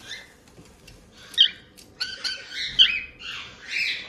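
A parrot calling: a run of short, high chirps and squawks, starting about a second in and repeating several times until near the end.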